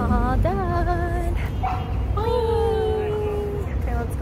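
A woman's voice making two long, wavering, drawn-out vocal sounds, the second held for over a second, over a low rumble.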